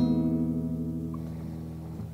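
Intro music: a guitar chord struck at the start, ringing out and slowly fading.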